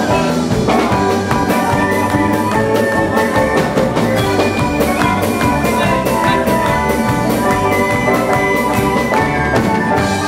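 Live folk band playing an instrumental passage: fiddles, accordion, banjo and bodhrán over a steady drum beat.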